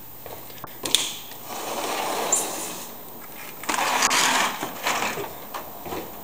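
A sliding glass patio door rolling and rattling in its track, with a sharp latch click about a second in and a second stretch of rattling about four seconds in.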